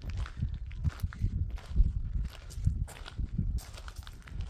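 Footsteps crunching on gravel at a steady walking pace.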